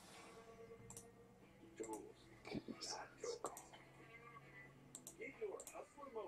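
Faint computer mouse clicks and keyboard taps, scattered through the middle and end, with soft muttering over a low steady hum.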